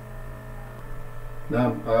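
Steady low electrical hum through a pause in talk, with a man starting to speak near the end.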